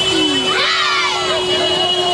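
A crowd of children shouting and cheering together, with a long steady tone held underneath.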